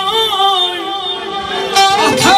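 Male singer performing Azerbaijani mugham into a microphone, holding long ornamented notes whose pitch wavers up and down.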